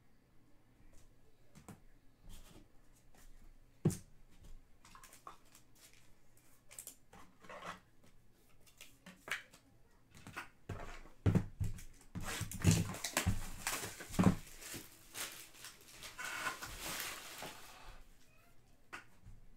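Handling of trading-card packaging: scattered light taps and clicks, then, from about twelve seconds in, a loud stretch of plastic and cardboard crinkling and rustling as a sealed hobby box is handled.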